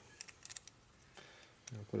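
Light clicks of small steel shim washers and a transmission shift fork being handled by hand: a quick cluster in the first half second and one more about a second in. A man starts speaking near the end.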